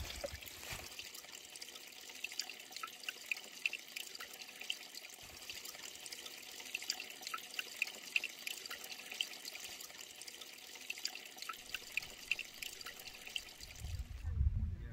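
Small stony mountain stream trickling faintly, with many small quick drips and plinks of water over the rocks.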